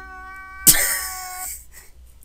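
A man crying: a drawn-out, high wail, breaking into a sudden loud sobbing outburst less than a second in that fades away over the next second.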